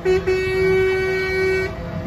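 Truck horn sounding: a short toot, then one long steady blast of about a second and a half that cuts off sharply.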